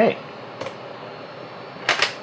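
Steady hiss of room tone, with a faint click about half a second in and a sharper click just before the end: laptop keys pressed to answer the DOS 'Abort, Retry, Fail?' prompt.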